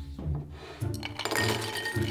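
Chopped walnuts poured from a glass measuring cup into a glass bowl, rattling and clinking against the glass in a dense run of small clicks from about a second in, over background music.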